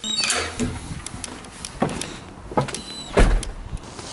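Camera handling noise while walking through a doorway, with scattered clicks and knocks, a brief high squeak at the start and a strong low thump about three seconds in.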